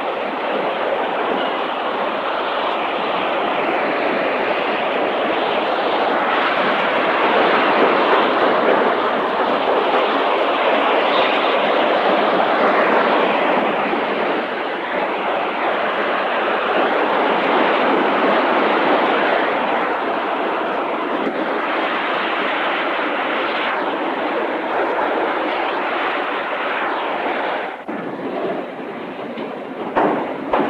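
Continuous din of a car assembly line: a dense, steady machinery noise of conveyors and tools, dipping briefly near the end.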